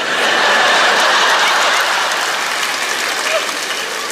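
Studio audience applauding a comedian's punchline: a dense clapping starts at once and slowly eases off.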